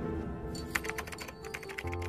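Rapid keyboard-typing clicks, a typing sound effect for on-screen text appearing letter by letter, starting about half a second in over fading intro music with held notes; a low held note comes in near the end.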